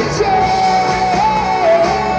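Live pop-rock band playing through a PA, a female lead singer holding long, steady notes with short turns in pitch over electric guitars and drums.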